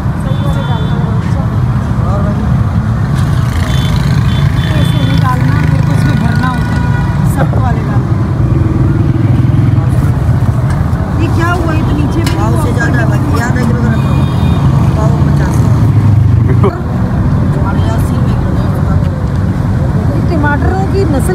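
Street traffic at a busy roadside market: a steady, loud low rumble of vehicle engines, with people talking in the background.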